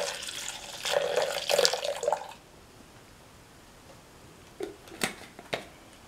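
Milk being poured into a mixer grinder jar, splashing steadily. The pouring stops about two seconds in, and a few light knocks follow near the end.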